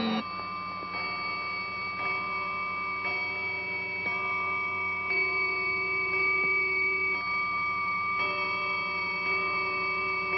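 Musical score of sustained, droning chords, with held notes that shift every second or so, under a soft tick about once a second.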